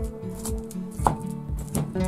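Wooden pestle knocking and crushing sliced Madeira vine aerial tubers against a ridged ceramic suribachi mortar, a few irregular knocks with the loudest about a second in.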